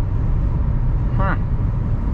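Steady low rumble of road and engine noise inside a car's cabin at highway speed, with a short spoken "huh" about a second in.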